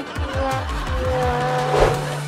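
Background music with comic sound effects: several falling pitch glides in the first second, then held tones and a short screech-like rush of noise near the end.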